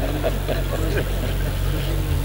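A steady low hum with faint background voices murmuring over it.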